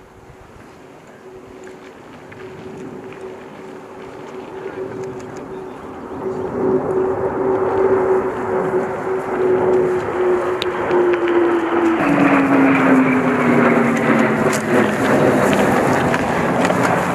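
An aircraft flying low overhead: its steady engine tone grows louder as it approaches, then drops in pitch about twelve seconds in as it passes and keeps falling as it moves away.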